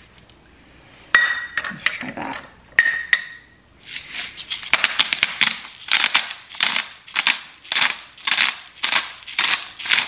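Hand-twisted pink Himalayan salt grinder crunching salt into a small metal measuring cup, in a steady run of about two grinding strokes a second from about four seconds in. Before that, two ringing metal clinks about a second and a half apart.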